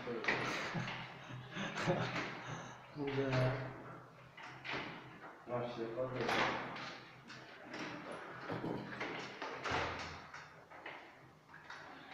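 Caterwil GTS3 tracked stair-climbing wheelchair going down a flight of stairs: a low electric-drive hum under repeated knocks and clunks, about one a second, as its tracks pass over the step edges.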